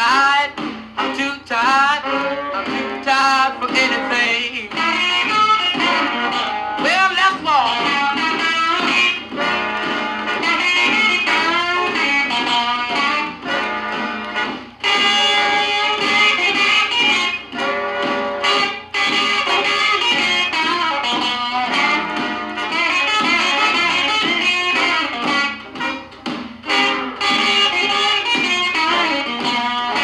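Instrumental break in a 1950s-style rhythm-and-blues record played from a vinyl LP: an electric guitar solo over the backing band, with bent notes.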